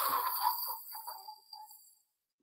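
A woman's breathy, mouth-made rocket whoosh for a blast-off: a rushing hiss that starts loud and fades away over about a second and a half.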